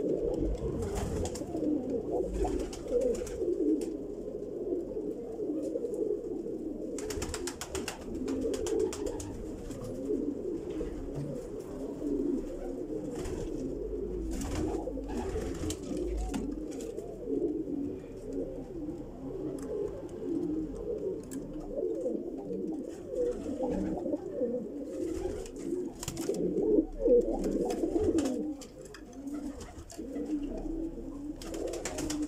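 Domestic pigeons cooing in a loft: a continuous low, warbling coo with scattered short clicks and rustles.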